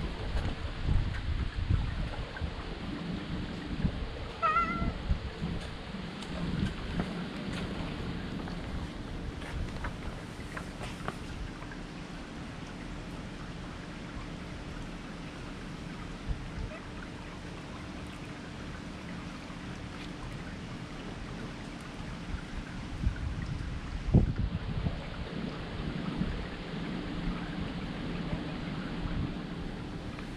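Steady rain falling, with low rumbles from handling of the camera's microphone. A brief high call about four and a half seconds in, and a sharp knock about 24 seconds in.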